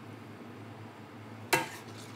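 A metal serving spoon knocks once against a metal frying pan about one and a half seconds in, with a short ring, over a steady low hum.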